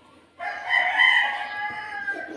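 A rooster crowing: one long call of about two seconds that starts suddenly and is much louder than the background.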